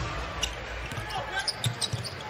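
Basketball dribbled on a hardwood court over steady arena crowd noise, with a few sharp bounces, two of them close together near the end.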